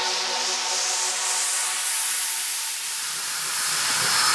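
Electronic white-noise sweep rising in pitch during a progressive psytrance build-up, with the kick and bass dropped out and faint sustained synth tones underneath.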